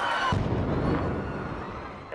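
A bomb explosion: a sudden deep boom about a third of a second in, its rumble dying away over the next second and a half.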